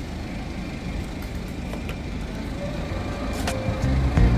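A steady low rumble of outdoor background noise, with background music coming in during the last second.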